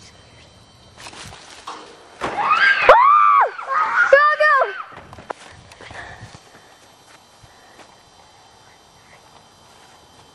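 Two high-pitched yells from a child, each rising and then falling in pitch. The first comes about two seconds in and is the louder; the second follows a second later, shorter and lower.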